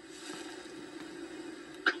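Quiet pause in a film's dialogue played through a television speaker: a faint steady hum over low background noise, with the next line starting right at the end.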